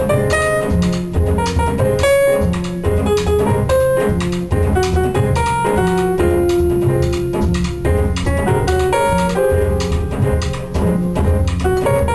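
Jazz piano played live, with a walking double bass and drums keeping time behind it.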